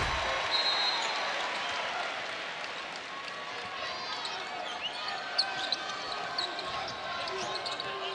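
Basketball arena sound during live play: a steady crowd murmur, a ball bouncing on the hardwood court, and short sneaker squeaks in the middle.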